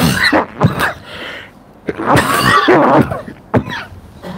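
A man coughing and clearing his throat into a close microphone: two short coughs at the start, then a longer rough bout about two seconds in, and a brief last one near the end.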